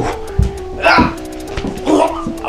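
Background music with a steady beat, over which short barks come about once a second.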